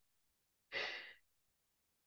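A woman's single short breathy exhale, like a sigh, as her laughter trails off, about a second in; otherwise dead silence.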